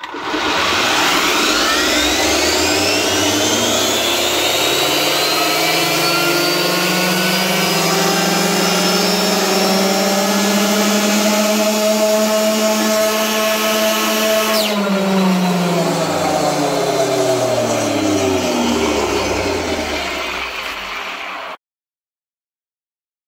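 Castle 2028 800kV brushless motor and the Arrma Limitless drivetrain whining on a roller dyno during a throttle test run. The pitch climbs quickly and then levels off as speed builds. About fifteen seconds in, the throttle is let off and the whine falls in pitch as the car and rollers coast down, until the sound cuts off abruptly near the end.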